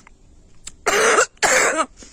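A person coughs twice in quick succession, two short harsh coughs about half a second apart, from an acrid gunpowder-like smell in the air that the speaker says makes you cough.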